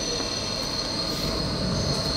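Steady machinery noise of a metalworking shop floor: a constant hiss with a thin, steady high-pitched whine on top, from machines running.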